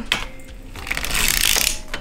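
Hand-cranked Erlbacher 64-stitch circular sock machine being turned, its latch needles clicking up and down through the cams with a ratcheting, rasping whirr that builds through the second half. The machine is knitting the short-row increases that shape the sock's toe.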